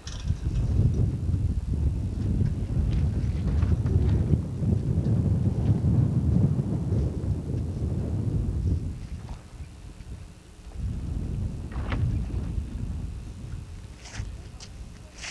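Wind buffeting the microphone aboard a moving ice boat: a loud low rumble that surges and eases, drops away about ten seconds in, then picks up again.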